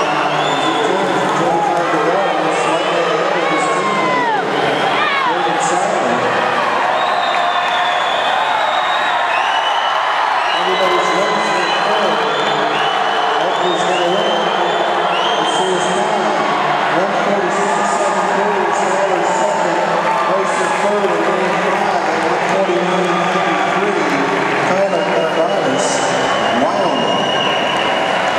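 Crowd of swimmers' team-mates and spectators cheering and shouting on racing swimmers, many voices yelling over one another, loud and steady throughout.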